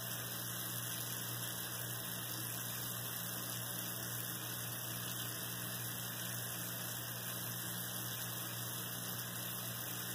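Steady hiss with a low electrical hum underneath, unchanging throughout, with no distinct sounds from the hands.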